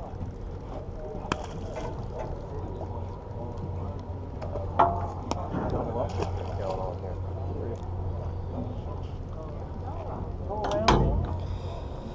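Fishing boat's engine running with a steady low hum, under the chatter of people aboard. Sharp knocks come about five seconds in and again near the end.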